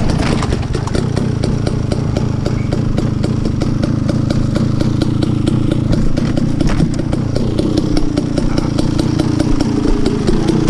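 Off-road motorcycle engine running steadily at low, trail-riding revs, with a change in engine note about seven or eight seconds in.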